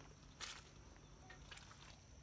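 Near silence, broken by one soft, brushing footstep through wet grass and mud about half a second in.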